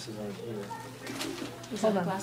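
A low, quiet voice murmuring indistinctly, with a soft cooing quality, over a steady low hum.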